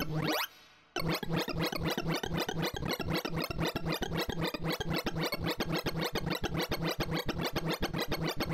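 Sorting-visualizer sonification: a quick rising sweep of synthesized tones as the array is shuffled, a brief drop, then about a second in a fast, even stream of short electronic blips as the sort compares and swaps elements, each blip's pitch following the value of the bar being accessed.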